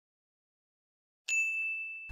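After a second of dead silence, a single bright electronic 'ding' chime strikes about 1.3 s in and rings on as a steady high tone: the quiz's answer-reveal sound effect.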